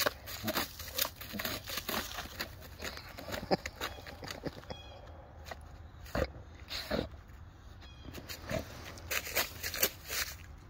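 A Weimaraner sniffing hard with its nose down in snow-covered dead leaves, scenting for small animals: an irregular series of short, sharp sniffs mixed with leaf rustles.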